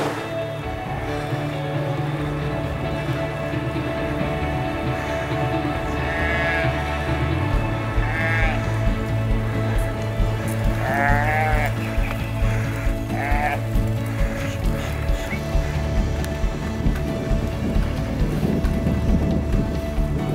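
Background music with sustained tones, over which livestock bleat several times midway through: four wavering calls spread over about eight seconds.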